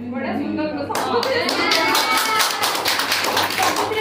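A small audience clapping, starting about a second in after a woman's voice and lasting about three seconds, with voices calling out over the applause.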